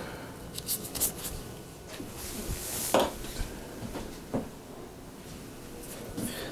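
Faint clicks and light metallic handling as a hex key and brake cable are worked at a bicycle's mechanical disc brake caliper, with a brief soft hiss a little over two seconds in.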